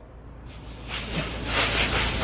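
Can of compressed air hissing as it is sprayed through a straw nozzle into an open PlayStation 4 casing, blowing out built-up dust. The hiss starts about half a second in and grows louder toward the end.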